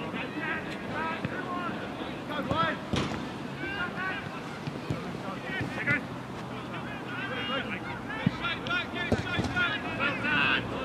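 Players shouting and calling to each other across an open football pitch, at a distance, with wind rumbling on the microphone. A few short, sharp knocks come through, around three seconds in and twice near the end.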